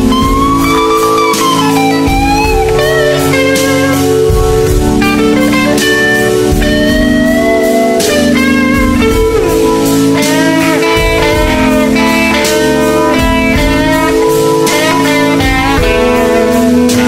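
Bluesy electric guitar solo: a lead line of sliding, bending notes over sustained backing chords and a steady beat.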